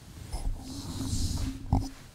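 Rubbing and bumping handling noise close to the microphone, low and rough, ending in a sharp knock shortly before the end.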